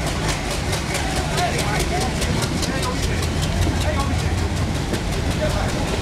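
A moving Indian Railways ICF passenger coach heard from its open doorway: a steady low rumble of wheels on track with a rapid, even clicking of about six clicks a second.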